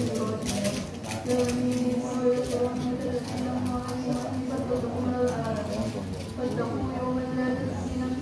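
A single voice chanting melodically, holding long notes that waver and slide between pitches, with a few sharp clicks in the first second or so.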